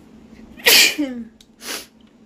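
A woman sneezing into her hand: one loud, sudden sneeze about two-thirds of a second in, followed by a shorter, quieter breath of noise near the end.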